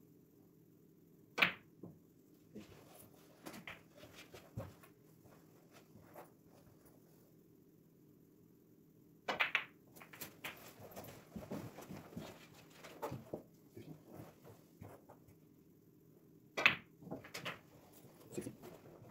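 Snooker balls clicking as shots are played: three loud, sharp cracks of cue on ball and ball on ball, about a second and a half in, about nine seconds in and near the end, the later two each followed by further quick clicks, with softer knocks between.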